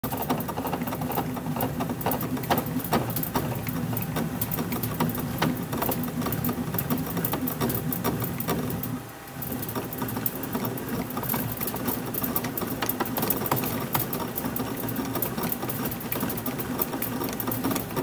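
Hand-operated bat roller working a composite softball bat's barrel between its rollers to break it in: a steady mechanical running with a dense stream of clicks and creaks, dipping briefly about nine seconds in.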